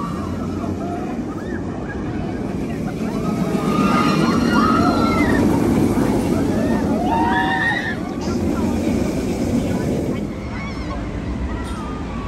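Steel roller coaster train running past on its track with a continuous rumble, loudest from about four to eight seconds in as it passes close. Riders' short screams rise and fall over it.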